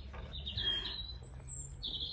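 Songbirds singing: short whistled phrases, with one very high thin note about midway through.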